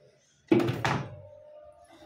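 An aluminium soft-drink can knocked down into a plastic refrigerator door shelf: two sharp knocks about a third of a second apart, about half a second in.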